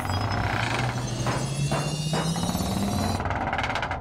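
A cartoon sound effect: a low hum rising steadily in pitch over about three seconds, with a high buzz above it and a few knocks near the middle, cutting off abruptly at the end.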